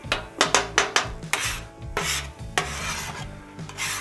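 Metal spatula scraping and chopping scrambled eggs on a steel griddle flat top, in a run of about a dozen irregular rasping strokes.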